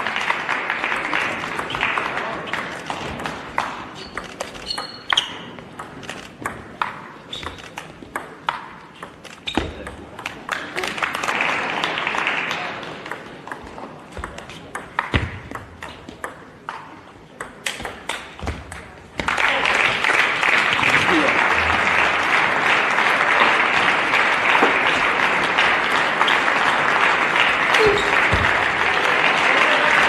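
A table tennis ball clicking back and forth off bats and table in quick rallies, about two hits a second. A short burst of audience applause follows one point. From about two-thirds of the way in, long, steady applause is the loudest sound, and it cuts off suddenly at the end.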